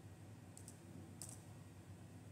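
Faint keystrokes on a computer keyboard: about four separate key presses as digits are typed, two of them about a second in coming close together.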